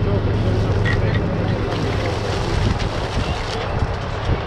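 Portable fire pump's engine running hard as a steady low hum, with water rushing through the hoses into the tank; the hum grows less even in the second half.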